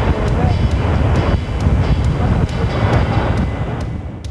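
Wind rumbling on a camcorder microphone aboard a moving boat, a loud steady low noise with faint voices underneath.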